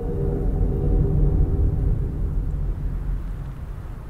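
A low rumble that swells up and fades away again, with several steady held tones above it.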